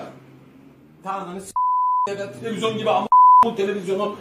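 Two censor bleeps, steady 1 kHz tones that blank out a man's speech: the first about half a second long at about a second and a half in, the second shorter and louder about three seconds in.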